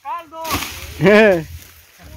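Machete chopping into sugarcane stalks, with one sharp whack about half a second in. Short wordless vocal sounds from a person come just before it and again about a second in.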